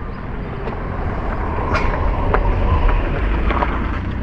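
A car driving slowly past at close range on a rough road: its engine and tyre rumble swell as it comes alongside, with scattered crackling clicks from the tyres on the road surface.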